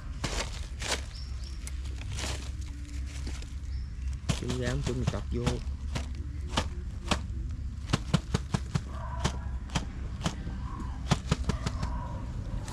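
Wire-mesh snake trap being handled, giving a run of sharp clicks and rattles through its plastic covering, over a steady low background hum.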